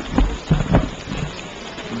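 Microphone handling noise: a rustling crackle with a few dull low thumps in the first second, then quieter rustle.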